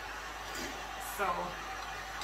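Handheld heat gun running, its fan giving a steady blowing hiss, while a woman briefly says "so" about a second in.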